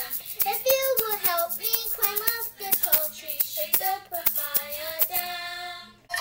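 A child singing a song in time with a handheld shaker, which gives sharp beats about four times a second. The melody ends on a long held note near the end and then cuts off.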